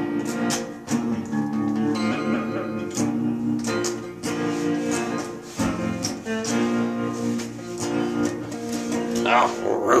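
A guitar strummed in a steady rhythm, its chords changing every second or so. A man's voice comes in singing near the end.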